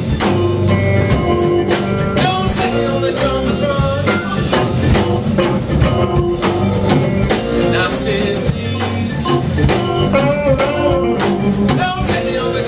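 Live alt-country rock band playing: drum kit, electric guitars, bass and pedal steel guitar, with keyboard, in a steady full-band groove.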